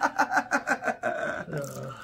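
Men laughing: a run of quick, rhythmic ha-ha pulses that dies away after about a second, followed by a softer voiced breath.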